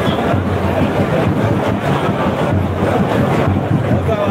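Loud, steady party din of crowd chatter and amplified music, heavy in the bass and muffled, with no break.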